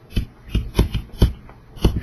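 A stylus tapping and scratching on a tablet screen while handwriting, about five sharp taps spread across two seconds.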